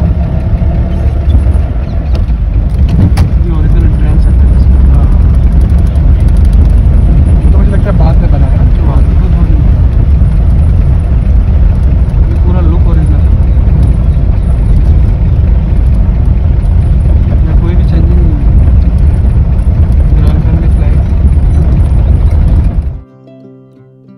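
Vintage car driving, heard from inside the cabin: a loud, steady low rumble of engine and road noise, with faint talking a few times.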